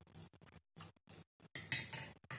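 Metal teaspoons clinking and scraping against a small stainless-steel bowl, a run of light irregular clicks that get louder over the second half.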